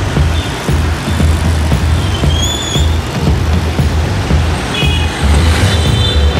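Busy motor-scooter street traffic with short high horn beeps near the end, mixed with music that has a heavy bass.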